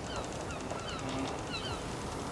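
Seabirds calling: short falling cries repeated every half second or so over a steady wash of noise like surf.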